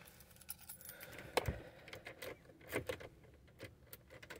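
Faint jingling and light clicks of a bunch of keys being handled, with a few small knocks, inside a car.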